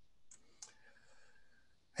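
Near silence with two faint clicks about a third of a second apart, heard as the presentation slide is advanced.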